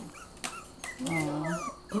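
Five-week-old puppies whimpering and yipping in thin, high, wavering whines while they scuffle together, with a woman's cooing voice about halfway through.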